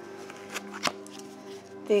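Tarot cards being handled, with two sharp clicks about a third of a second apart near the middle, over soft steady background music.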